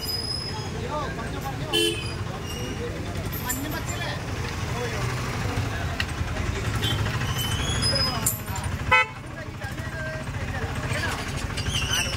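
Roadside traffic: a steady engine rumble with short vehicle-horn toots now and then, and one sudden loud noise about nine seconds in.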